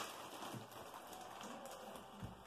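Faint rustling and crinkling of plastic packaging bags being handled.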